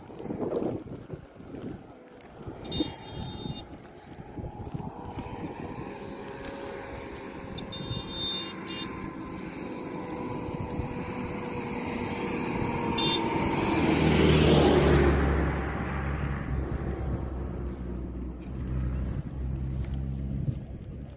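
A motor vehicle coming along the road, growing steadily louder and passing close about three-quarters of the way through, then a low engine hum that carries on.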